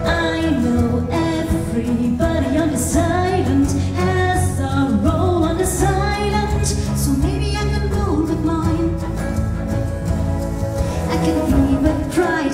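A woman singing a melodic song into a microphone, amplified through a hall's sound system over instrumental accompaniment, her voice gliding between held notes.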